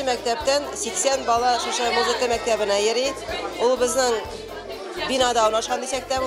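A woman talking, with music playing in the background.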